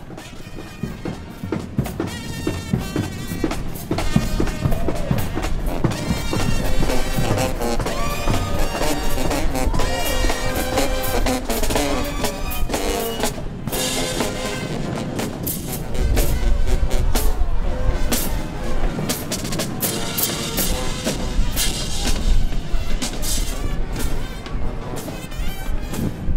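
Marching band playing: sousaphones and trumpets over snare and bass drums, the bass growing heavier about two-thirds of the way in.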